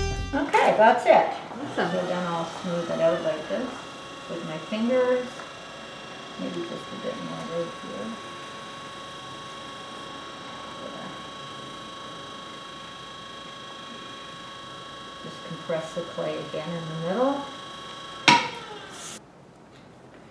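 Electric pottery wheel running with a steady motor hum while a leather-hard bowl is trimmed on it; near the end there is a click and the hum stops as the wheel is switched off.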